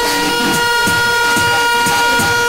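Air-horn sound effect on the sound system: one long blast held on a single steady pitch for about three seconds, over the music's beat.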